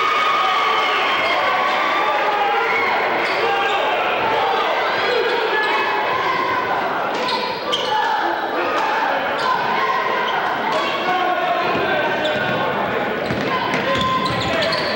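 Game sounds in a school gymnasium: many voices from players and spectators talking over one another, no words clear. A basketball bounces on the hardwood floor several times as sharp knocks, mostly in the second half.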